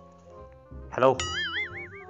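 A cartoon 'boing' sound effect: a warbling tone that wobbles up and down about five times in a second, starting just after a spoken 'hello', over quiet background music.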